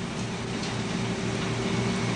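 Steady background hiss with a low, even hum: room tone.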